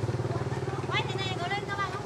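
A motor running with a steady low hum and a fast, even pulse. Faint voices come in about halfway through.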